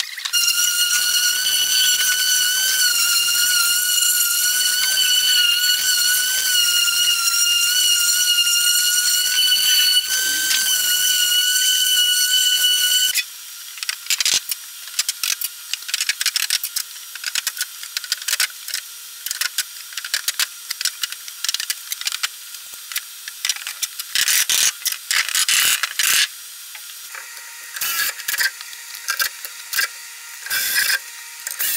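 A shop machine's steady high-pitched whine holds for about thirteen seconds and cuts off suddenly. It is followed by scattered clicks and knocks as a steel frame is handled and worked.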